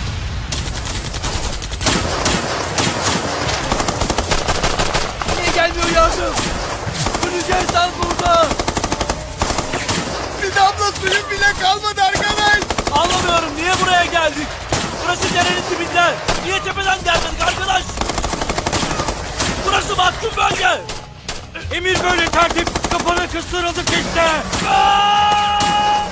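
Rapid automatic gunfire, continuous and dense throughout. Voices shouting over it from about five seconds in.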